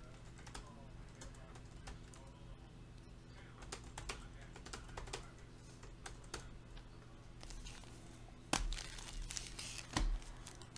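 Irregular light clicking of typing on a computer keyboard, with a louder knock near the end.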